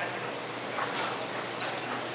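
Steady background noise of an indoor cutting-horse arena, with a short rising-and-falling call about a second in.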